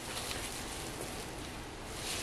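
Faint steady hiss of room tone with no distinct events, in a short pause between remarks.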